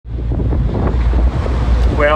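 Wind buffeting the microphone aboard a boat, over a steady low rumble.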